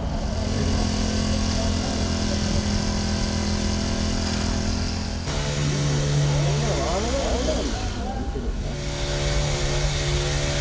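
A steady mechanical rumble with a held low hum, like an engine or blower running. The hum drops to a lower pitch at a sudden change about five seconds in, and faint voices come through over it after that.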